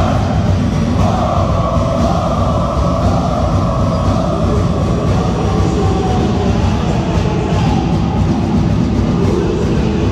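A large crowd of supporters chanting together in an indoor sports hall, loud and steady without a break.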